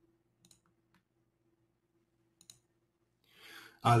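Near silence over a faint steady hum, broken by a few faint, brief clicks, likely a computer mouse or keys: about half a second in, at one second, and about two and a half seconds in. Near the end a breath is drawn, and a man says "uh."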